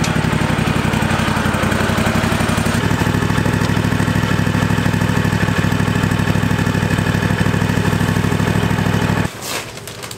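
Toro riding mower's small engine running steadily with an even pulsing beat, then cutting off suddenly near the end.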